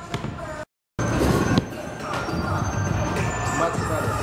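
A bowling ball rolling down a wooden lane with a steady low rumble. It starts loudly just after a short gap of silence about a second in, over background music and chatter in the alley.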